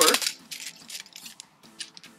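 A travel tripod's leg sections and flip-lever locks being worked as the legs are extended: a sharp clack right at the start, then a run of small irregular clicks and clinks.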